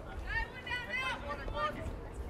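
A high-pitched voice calling out, with words that cannot be made out, over low background noise.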